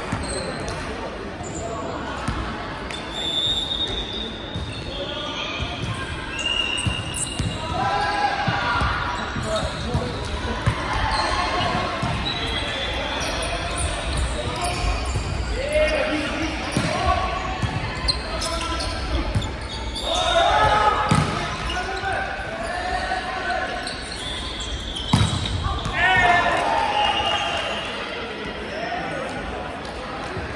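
Indoor volleyball rally: players shout and call to each other, and the ball is struck and hits the floor with sharp smacks, the loudest near the end. Short high squeaks come from shoes on the hardwood court, and everything echoes in the large hall.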